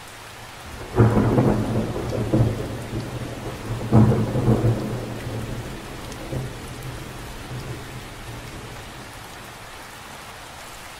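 Steady rain falling on a lake's surface. A clap of thunder breaks in about a second in and a second one about three seconds later, each rumbling away over the following seconds.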